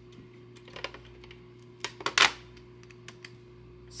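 Light clicks and taps of a pink desktop calculator being picked up, set on the desk and keyed, with a louder pair of knocks about two seconds in, over a low steady hum.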